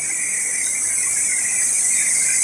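A steady high-pitched whine with a faint hiss, holding an even level.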